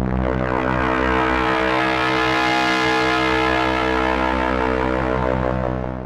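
Eurorack modular synthesizer voice with phase and FM modulation on its oscillators, playing a sustained, buzzy drone of many harmonics. Its top end brightens through the middle as the modulation is dialled in, then dulls again before the sound cuts off at the very end.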